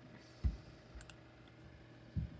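A low soft thump about half a second in, then a short sharp click about a second in, from clicking through to the next image on a computer.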